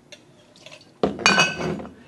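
Stainless steel jigger clinking against a steel cocktail mixing tin as a measure of coconut rum is tipped in: a sudden metallic ring about a second in that fades away, after a couple of faint clicks.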